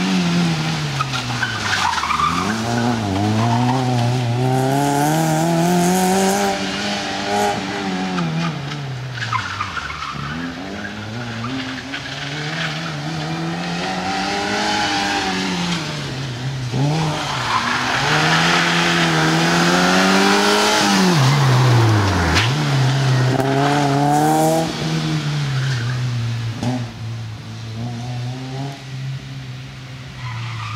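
Fiat Cinquecento rally car's engine revving hard, its pitch rising and falling over and over as the driver accelerates and lifts between tight turns. Tyres skid and scrabble on the surface during slides, loudest past the middle.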